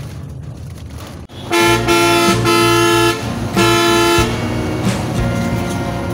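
Vehicle horn honking three times in long, steady blasts from about a second and a half in, over the low rumble of the moving bus.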